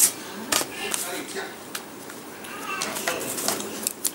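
Close handling noises: a run of sharp clicks and taps as a nail polish bottle and a stamping plate are picked up and handled. The loudest click comes right at the start.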